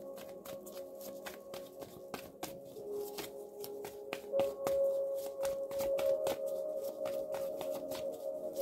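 A deck of tarot cards being shuffled by hand, a quick run of light card clicks, over soft ambient background music with long held tones like a singing bowl.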